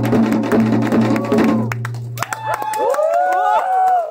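Two janggu (Korean hourglass drums) played together in a fast, dense rhythm of stick strokes that stops about two seconds in. After a short gap a voice comes in with a long, sliding, wavering sung line.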